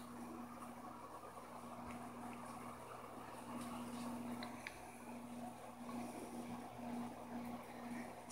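Faint steady hum of aquarium equipment over a low background hiss, with a few faint ticks.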